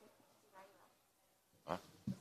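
Near silence: room tone in a hearing room, with faint distant speech about half a second in and a short spoken "ah?" near the end.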